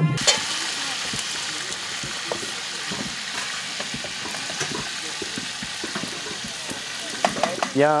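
Steady sizzling hiss of food frying in a cooking pot, with a few faint clicks through it.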